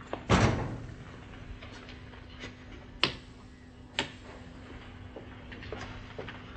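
A door slams shut about a third of a second in, followed by two sharp knocks about a second apart and a few lighter taps.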